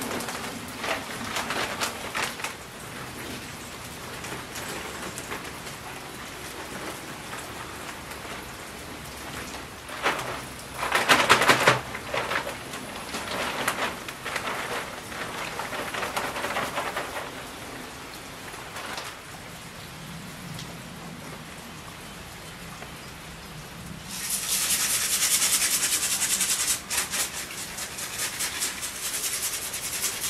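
Compost and potting soil pouring out of plastic bags into coir-lined wire planters, with the bags crinkling. There is a loud rush of pouring about ten seconds in and a long hissing pour near the end.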